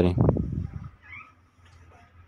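A voice finishing a spoken word, then a faint short chirp a little past the middle.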